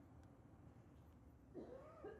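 Near silence, then about one and a half seconds in a faint animal call that rises and falls in pitch, sounding like a meow.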